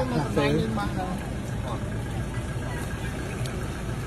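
A person's voice briefly in the first second, over a steady low hum of an engine running at idle throughout.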